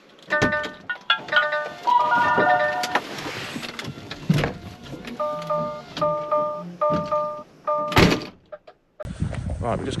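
A lorry cab's electronic warning chime beeping over and over, with knocks and rustling as the driver climbs out of the cab. About eight seconds in, the cab door shuts with a loud thunk.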